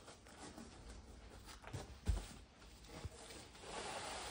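Faint rustling and knocking of a cardboard box and its plastic wrapping being opened and handled, with a soft thump about two seconds in.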